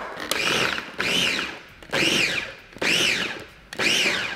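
Small electric food processor run in five short pulses, chopping red onion and green chile. With each pulse the motor whines up in pitch and winds back down.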